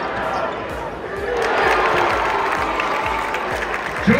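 Basketball dribbled on a hardwood court during live play, with repeated low bounces under the murmur of an arena crowd that swells about a second in.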